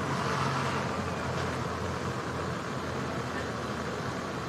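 Steady street-traffic noise: an even hiss over a low hum, with no distinct events.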